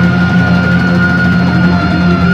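Live hard rock band playing loud, with the electric guitars and bass holding a steady sustained chord over the drums.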